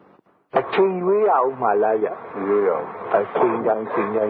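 A man speaking, in a narrow-band recording with no highs, starting after a short pause about half a second in.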